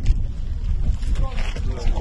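Wind buffeting the microphone: a heavy, low rumble with no pitch, with a man's voice faintly in the second half.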